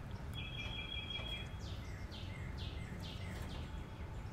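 A bird singing faintly: a short held whistle, then a run of about five quick down-slurred notes, over a low steady outdoor rumble.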